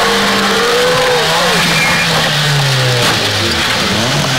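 Rally car engine running as the car slides off a wet tarmac stage into the roadside verge; the engine note falls about three seconds in.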